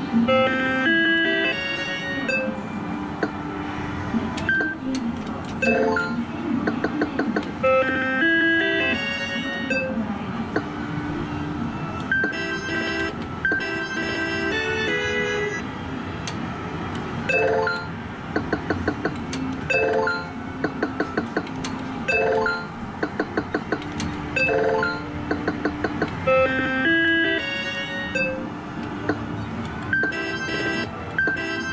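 Sigma Joker Panic! video poker machine playing its electronic beeps and short jingles through the Hi-Lo double-up round, with quick runs of ticks, over the steady background noise of the arcade.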